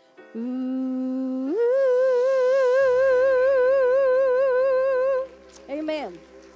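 A woman singing solo into a microphone: a held low note, then a slide up to a long high note with steady vibrato, ending the song. A short falling note follows near the end, and a faint low drone comes in under the high note.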